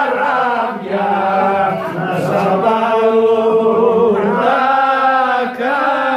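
Men singing a slow Greek folk song together, unaccompanied, in long drawn-out notes with short breaks between phrases.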